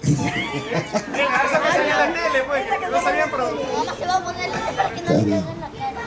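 Several people talking at once: overlapping chatter of a gathered group, with no single clear voice.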